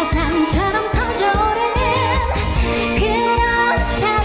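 A woman singing a trot song live into a microphone over a backing track with a steady dance beat. Her voice wavers with vibrato on the held notes.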